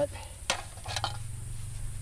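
Thin aluminium pie pans clinking as they are separated and handled, with two sharp metallic knocks about half a second and a second in.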